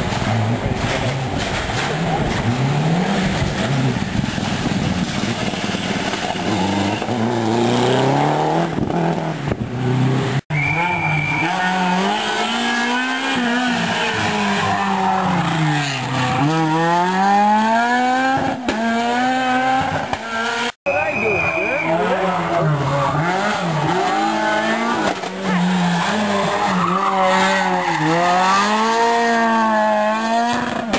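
Rally cars' engines revving hard through a tight corner, the pitch climbing and dropping repeatedly with throttle and gear changes. There are two abrupt breaks, about ten seconds in and about twenty seconds in, where the recording cuts.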